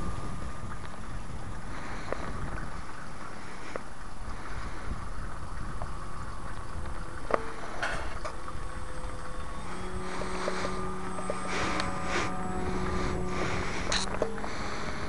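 Wind rumbling on the microphone under the faint drone of an RC Cap 232's brushless electric motor (RC Timer 1150kv) turning a 9x4 propeller high overhead. In the last few seconds the motor becomes a steady hum as the plane passes closer.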